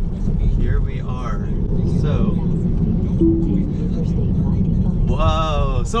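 Steady road and tyre rumble inside a Tesla Model 3's cabin at highway speed on a wet road, with no engine note. A short low tone sounds about three seconds in.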